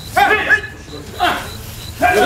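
Several men's voices give short shouts (kiai) during aikido wooden-staff (jo) practice, in two bursts, the first near the start and the second about a second later. A cricket chirps faintly and steadily behind them.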